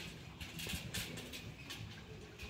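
A horse's hoofbeats on soft arena footing: several short, uneven steps.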